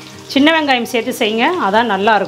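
A voice singing over background music, with a faint sizzle of chopped onions frying in oil underneath.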